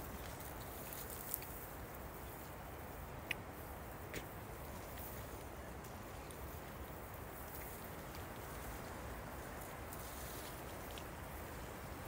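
Faint, steady outdoor background noise with three small, sharp clicks in the first few seconds.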